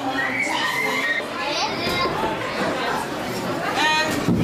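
Indistinct chatter of several voices, children among them, in a large echoing room, with a short high-pitched voice near the end.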